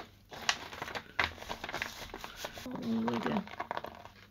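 Newspaper rustling and crinkling as it is pressed and rubbed by hand over a paint-coated mesh on a canvas, in a quick run of irregular crackles.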